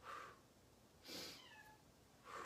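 A person's quick, audible breaths, about one a second, in time with a breathing exercise, with a faint falling cat meow behind them about a second and a half in.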